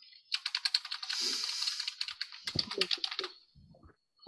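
Fast typing on a computer keyboard, heard over a video-call microphone: a quick run of keystrokes lasting about three seconds.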